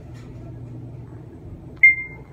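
Schindler 3300 traction elevator car travelling upward with a low steady hum, then a single short electronic chime near the end as the car reaches the sixth floor.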